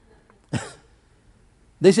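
A man clears his throat once, briefly, about half a second in; his speech resumes near the end.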